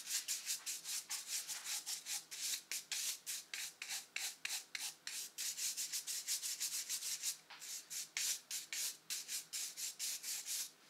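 A brush scrubbing quickly back and forth over a waxed Civil War artillery shell, several brisk strokes a second with a brief pause about seven and a half seconds in. It is buffing the freshly set wax into the shell's surface, the last step of preserving it.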